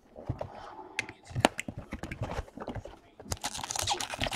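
Trading card box and pack wrappers being handled, torn open and crinkled, with a few sharp clicks and knocks; the crinkling gets denser near the end.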